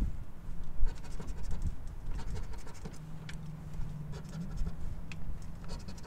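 A coin scratching the coating off a paper scratch-off lottery ticket, in short spells of rapid back-and-forth strokes.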